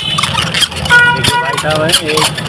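Street traffic with a short, steady horn toot about a second in, over background voices.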